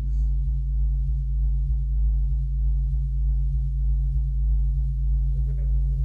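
Low electronic drone from a stage soundtrack: a steady deep synthesized hum with a soft, even pulsing above it, about two to three pulses a second.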